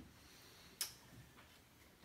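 Near silence: room tone, with one short sharp click a little under a second in and a fainter click about half a second later.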